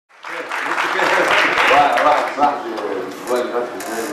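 A man speaking into a microphone over a burst of audience applause that fades out about halfway through.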